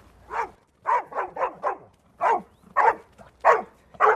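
Search-and-rescue dog barking repeatedly, about eight short barks in quick, uneven succession: the bark alert that a trained rescue dog gives to signal a found person.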